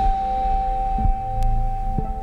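Ambient electronic drone music played live on hardware synthesizers: a steady high tone held over a low droning bass.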